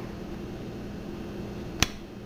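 Quiet room tone with a faint low hum, and a single sharp click near the end as the plastic syringe and the medicine vial are handled and pulled apart.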